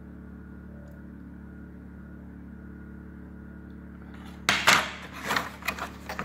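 A steady low hum, then about four and a half seconds in a quick run of loud clacks and knocks as hard molded ABS plastic socket trays are handled and bumped together.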